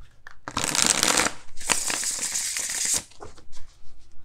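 A tarot card deck being shuffled by hand in two runs of rapid card flutter, the first about a second long and the second slightly longer, with a short break between.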